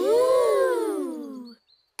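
Several children's cartoon voices together in one long, drawn-out exclamation of wonder. The pitch rises, then sinks, and fades away after about a second and a half.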